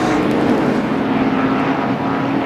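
NASCAR Winston Cup stock cars' V8 engines running at speed in a close pack, a steady drone that holds one pitch.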